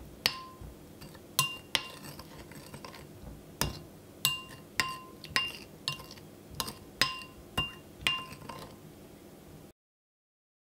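Metal spoon clinking against a glass mixing bowl while stirring a thin sauce: about a dozen irregular strikes, each leaving a short glassy ring. The sound cuts off suddenly near the end.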